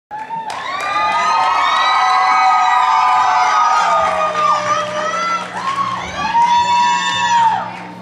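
Concert audience cheering, with several long high-pitched screams and whoops over one another; the cheering fades near the end. A steady low hum starts about halfway through.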